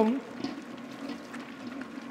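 Stand mixer running at second speed, its flat paddle beating wet, high-hydration ciabatta dough in a steel bowl: a steady churning noise.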